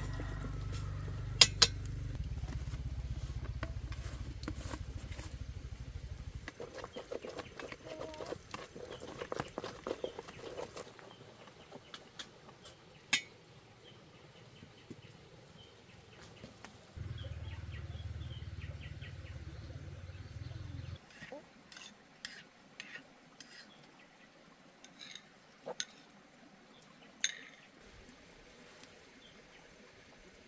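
Scattered clinks and knocks of utensils against a metal cooking pot, the loudest about a second and a half in, with chickens clucking in the background. A low rumble comes in at the start and again in the middle.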